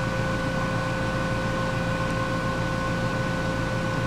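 Steady room ventilation running: an even hiss and low hum with a few constant tones held over it, no change throughout.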